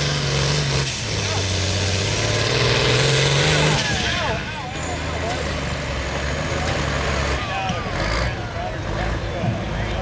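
Diesel engine of a 9,500 lb Pro Farm class pulling tractor running flat out while pulling a weight-transfer sled, black smoke pouring from the stack. Its note drops in pitch about a second in and again a few seconds later as the sled's load builds and the engine lugs down.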